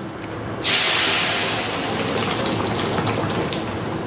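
Liquid curry poured onto a hot coconut-oil tempering of curry leaves and spices in a pan. It gives a sudden loud sizzle just over half a second in, which slowly dies down to a steady hiss.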